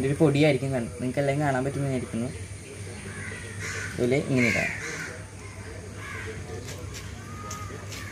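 Crows cawing a few times around the middle, after a man's voice speaking in the first couple of seconds.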